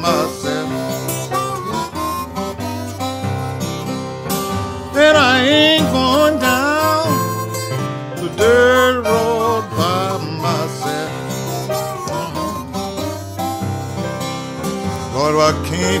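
Acoustic blues instrumental break: a harmonica plays wavy, bending notes over acoustic guitar accompaniment.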